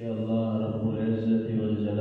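A man's voice chanting one long, steadily held note that starts suddenly.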